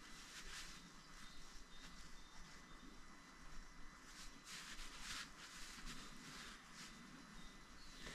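Near silence: faint room tone with a few soft, brief rustles.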